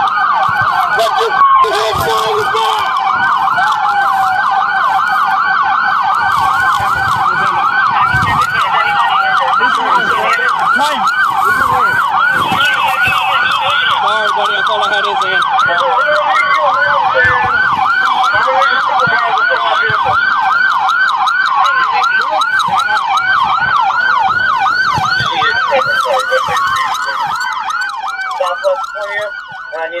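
Police car sirens, several at once: a rapid yelp, several sweeps a second, with slower wails rising and falling over it. The yelp stops near the end, leaving one slow wail.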